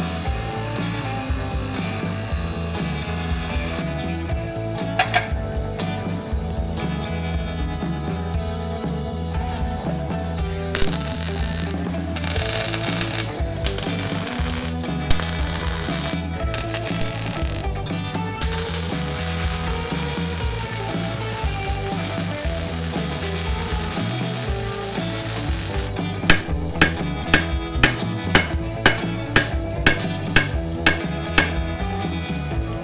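Background rock music over shop work: a bench grinder running on steel, then electric arc welding on a steel axle truss, crackling in short bursts and then in one long run, and near the end a hammer striking metal about two to three times a second.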